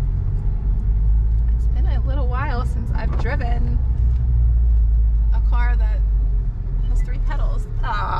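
Low drone of a Honda Civic Type R's 2.0-litre turbocharged four-cylinder engine heard from inside the cabin as the car pulls away slowly in first gear, easing off about six and a half seconds in.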